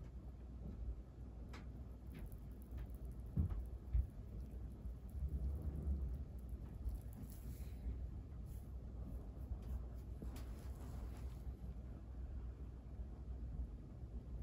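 Faint rustling of fingers moving in hair and over cloth, with two soft low thumps about three and a half and four seconds in.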